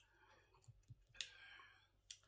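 Faint mouth clicks and smacks from someone eating sour mango dipped in chili salt, with a sharper click about a second in followed by a short breath.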